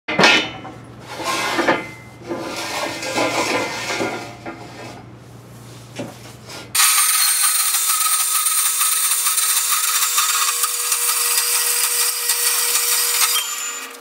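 Metal-cutting band saw running with a steady hum while square steel tube clanks against it. About seven seconds in, the sound switches abruptly to a louder, steady hiss with one held tone, which lasts until shortly before the end.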